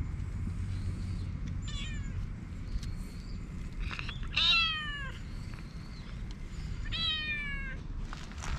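Calico cat meowing three times: a faint short meow, a loud one about halfway through, and another near the end, each call falling in pitch.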